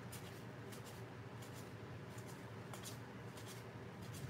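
Faint handling of cardboard baseball cards: soft slides and small flicks as the cards are thumbed off a stack one by one, over a low steady hum.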